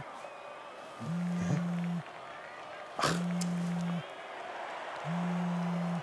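Mobile phone sounding an incoming call: a low buzz that comes on for about a second and stops for about a second, three times over, with a sharp click about halfway through.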